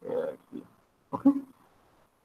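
A man's short throaty vocal sound, then a single spoken word, 'okay', about a second in.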